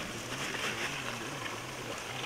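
Water pouring steadily from a plastic pipe into plastic containers.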